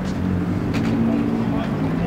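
A car engine idling steadily, with crowd chatter around it.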